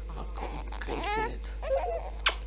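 A young woman sobbing in someone's arms: a wavering, rising wail about a second in, then a short whimper near the end.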